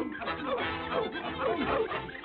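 Cartoon bloodhounds barking and yelping in quick succession, several short falling yelps a second, over orchestral music.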